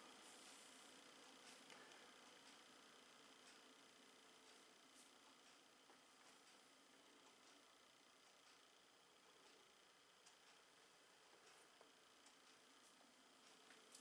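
Near silence: a faint steady hiss from a Noctua NF-A14 ULN 140 mm fan, barely audible and growing slightly quieter.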